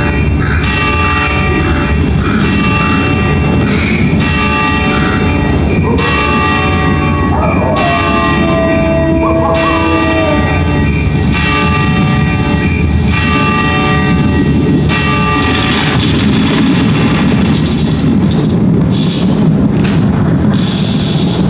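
Loud, ominous stage-show music played over a PA, with a bell tolling about once a second as the stage clock nears midnight. A gliding tone passes through the middle, and the music builds into a rush of noise with sharp hits near the end.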